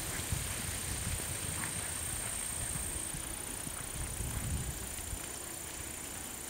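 A horse's hooves giving dull, irregular thuds on the soft sand and dirt footing of an arena as the mare moves through an obstacle course.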